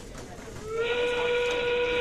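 Factory-whistle sound cue from the FTC match system over the PA, marking the start of the 30-second endgame. It is a loud whistle that slides up about half a second in, then holds one steady pitch.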